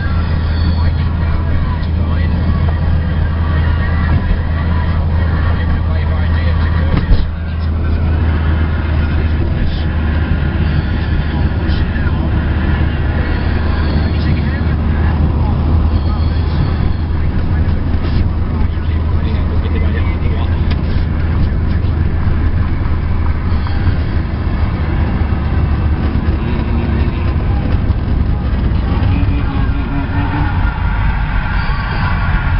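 Steady low drone of a car's engine and tyres heard from inside the cabin while driving, with one sharp knock about seven seconds in.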